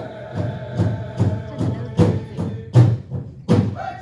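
A powwow-style drum is beaten in a steady rhythm of about two and a half beats a second between phrases of an honor song. A few strikes in the second half land harder than the rest, and group singing comes back in just before the end.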